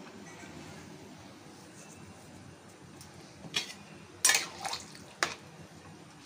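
Metal spatula scraping and clinking against a metal kadhai as a watery curry is stirred: a few sharp strokes in the second half, after a quiet start.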